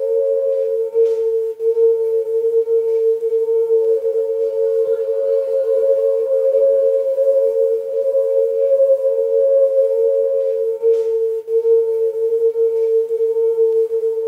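A sustained drone of two close, steady tones held throughout, wavering slightly where they beat against each other, with fainter higher tones above.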